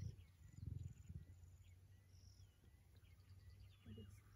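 Near silence: faint high bird chirps and whistles over a low steady hum, with a brief low rumble about half a second to a second in.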